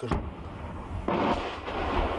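Artillery shell exploding about 150–200 m away, heard from inside a dugout: a low rumble with a sharper blast about a second in. The soldiers take the incoming rounds for fragmentation shells bursting in the air.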